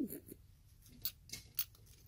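Faint, scattered small clicks and scrapes of metal as the threaded pushrod of a Nissan D21 clutch master cylinder is turned by hand, with a screwdriver held through its clevis.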